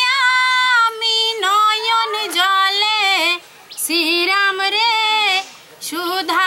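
A woman singing a Bengali patua scroll song (pater gaan) on the Ramayana, solo and unaccompanied, in long held, gliding high notes, with a brief pause for breath about three and a half seconds in.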